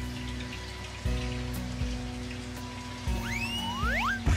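Water bubbling and splashing in an airlift filter box driven by an air stone, under steady background music. Near the end, a few rising gliding tones sweep upward.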